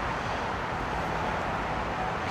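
Steady outdoor background noise: an even hiss over a low rumble, with no distinct event.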